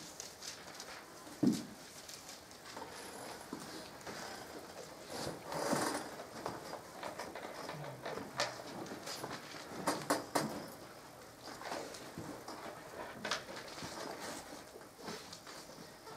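Quiet room with scattered soft knocks, clicks and rustles at irregular intervals, and a low thump about a second and a half in.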